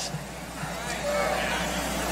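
A pause in a sermon in a church sanctuary: faint voices from the congregation over a steady low hum in the room.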